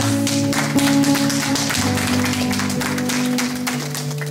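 Live church band playing slow background music in held chords, with an electric guitar; the chord shifts about two seconds in and again near the end.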